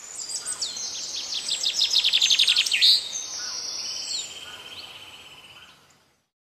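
Birdsong: a quick series of high chirps building to a loud sweeping note just before three seconds in, followed by a steady lower trill that fades out near the end.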